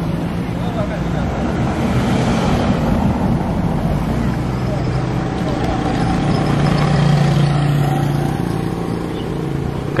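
Street traffic with motor scooters passing close by on a cobbled road, their engines swelling and fading, loudest about seven seconds in.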